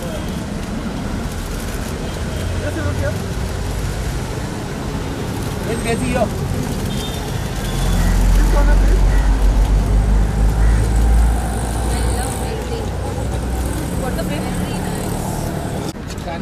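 Street traffic noise with indistinct voices of people standing around. A louder low rumble swells for about three seconds past the middle.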